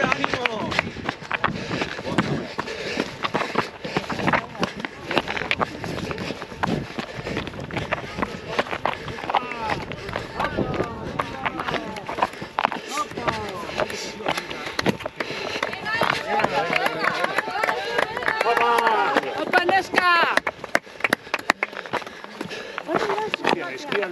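Voices calling and talking throughout, loudest and most insistent from about sixteen to twenty-one seconds in. Under them, the footfalls of people running on a rocky mountain trail.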